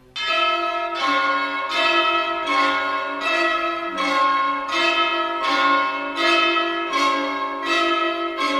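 Orchestral music: a bell-like struck chord repeats evenly about every three-quarters of a second, each stroke ringing and dying away over held tones.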